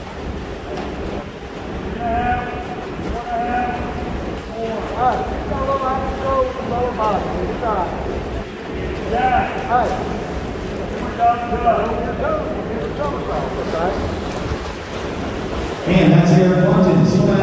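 Indistinct voices talking and calling out, echoing in an indoor pool hall, over a steady low rumble.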